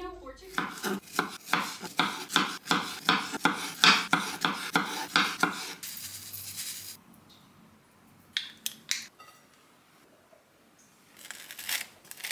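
A metal spoon clinking and scraping against a ceramic bowl in quick repeated strokes, about three a second, for the first six seconds. Then a brief hiss of small seeds pouring from a bag into a bowl, followed by a few faint clicks.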